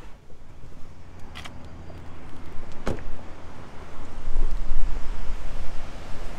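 Low rumble of passing road traffic, swelling to its loudest about four seconds in, with two short sharp clicks earlier on.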